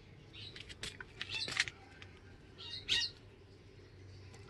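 Small birds chirping: a few quick, high chirps about a second in, and another short group near three seconds.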